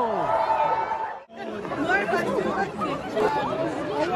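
Crowd chatter: many voices talking over one another, with a brief break about a second in.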